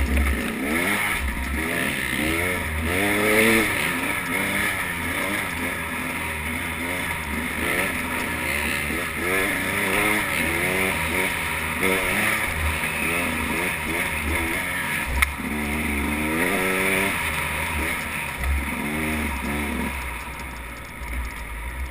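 Dirt bike engine revving up and down over and over, its pitch rising and falling with the throttle and gear changes while riding a single-track trail, over a low rumble. One sharp knock about fifteen seconds in.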